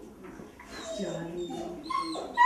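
Kennelled greyhounds whining and whimpering, in wavering high notes.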